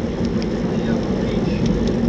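Steady low rushing of wind on the microphone of a camera on a moving bicycle, with road and tyre noise underneath.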